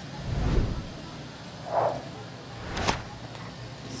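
A cardboard sewing pattern being handled and slid off quilted fabric on a cutting mat: rustling and scraping, with a sharp tap about three seconds in.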